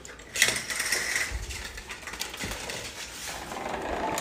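A sliding glass door being pulled open along its track, giving an uneven rattling, scraping run that starts about a third of a second in and eases off after about three seconds.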